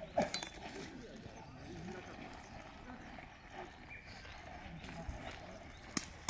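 Faint, distant voices of players calling on a football pitch, with a sharp knock shortly after the start.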